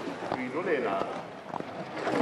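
Skeleton sled's steel runners running down an ice track, a noisy scraping rumble with a few sharp knocks, and a voice faint in the background.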